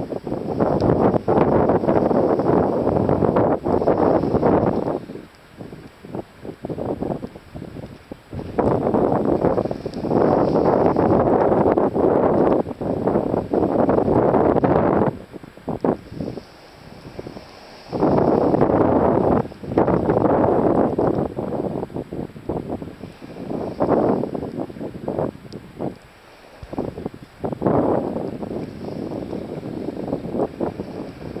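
Wind buffeting the camera's microphone in about four loud gusts lasting several seconds each, with quieter lulls between.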